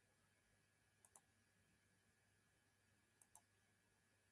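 Faint computer mouse clicks over near-silent room tone: two quick pairs of clicks, one about a second in and one a little after three seconds.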